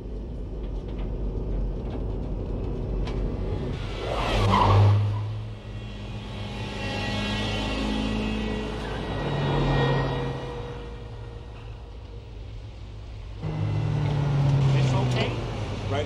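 Johnnycab robot taxi driving, its motor hum and road noise swelling three times: about four seconds in, around eight to ten seconds, and again starting suddenly near the end.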